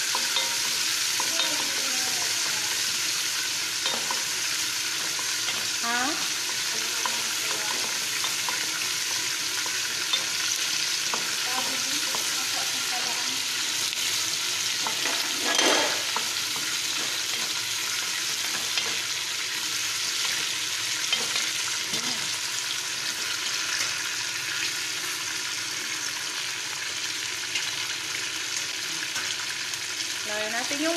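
Chicken pieces and onions frying in a pot with a steady sizzle, stirred with a wooden spoon. A louder scrape or knock of the spoon comes about halfway through.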